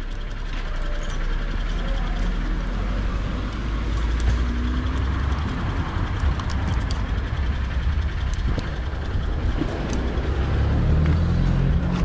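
Steady hiss of rain with the low rumble of a motor vehicle's engine, which grows louder near the end.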